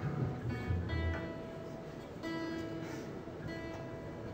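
A plucked string instrument sounding a few held notes, one after another, about a second in, just past two seconds and again near the end.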